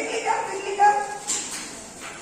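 A woman's voice speaking in short, high-pitched phrases, loudest just under a second in, then trailing off in the second half.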